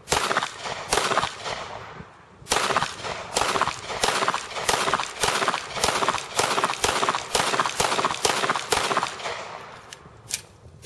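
Beretta M9 9 mm pistol fired one-handed in a rapid-fire recoil-recovery drill: two shots about a second apart, then after a short pause a fast, even string of shots at about two to three a second, each with a short echo off the range.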